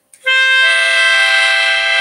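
Melodica, a small keyboard wind instrument, blown to play a C major chord: the lowest note sounds first, two higher notes join within about half a second, and the chord is held steady.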